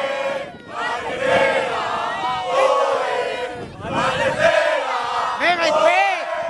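A group of footballers and children shouting and chanting together in celebration, many voices at once in loud phrases with brief breaks between them.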